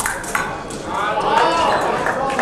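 Voices calling out in a large sports hall, with sharp metallic pings of épée blades striking each other.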